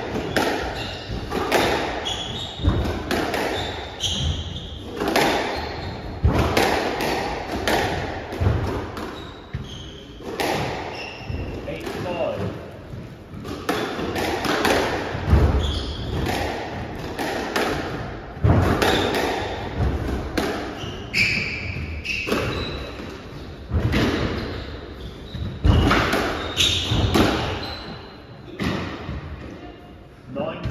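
Squash rally: the ball cracking off rackets and smacking against the court walls in quick, irregular succession, with shoes squeaking on the wooden floor, all echoing in the enclosed court.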